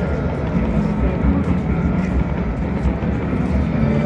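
Low steady rumble of aircraft flying overhead, with faint crackling from daytime fireworks and music in the background.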